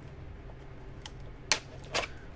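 Plastic clicks from an HP Compaq laptop's battery latch and battery being worked loose: one sharp click about one and a half seconds in and a lighter one just before the end.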